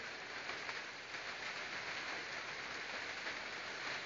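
Rain falling steadily, heard as a faint, even hiss.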